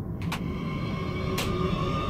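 Movie soundtrack: a soft, muffled whooshing over a steady low rumble, with two faint sharp ticks about a second apart.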